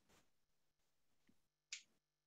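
Near silence, broken by one short, sharp click near the end.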